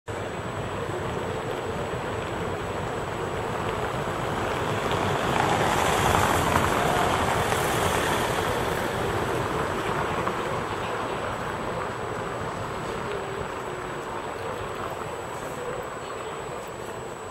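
Steady rushing outdoor noise that swells and fades about six to eight seconds in, with a thin, steady high-pitched whine underneath.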